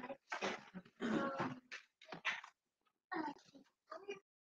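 A run of five or six short vocal sounds, each well under a second, with silent gaps between them.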